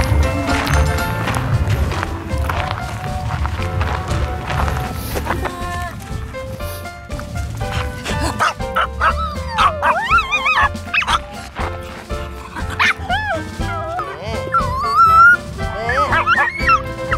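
Upbeat background music throughout. From about halfway in, a small Maltese dog whines and yips in several rising and falling cries over the music.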